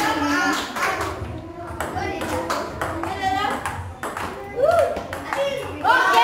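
Onlookers' voices calling out, with light sharp clicks of a table-tennis ball scattered throughout.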